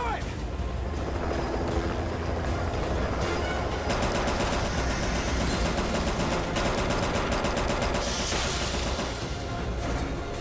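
Action-film sound effects: a deep, steady rumble with rapid rattling clicks that thicken from about four seconds in, under a film score.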